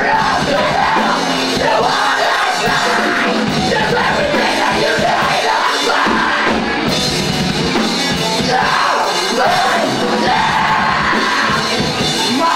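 A live rock band playing loud, with electric guitars, keyboard and drums, and a singer shouting over the music.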